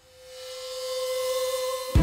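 Electronic background music: one held note swelling steadily louder.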